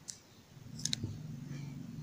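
Faint short clicks: one near the start and a quick pair just under a second in.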